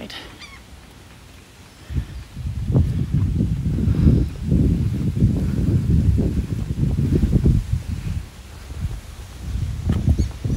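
Wind buffeting the microphone: an irregular, gusting low rumble that starts about two seconds in and eases off near the end.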